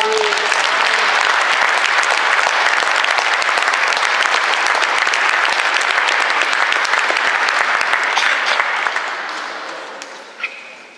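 Audience applause: dense, steady clapping that starts as the last note of the band dies away, then thins and fades out near the end.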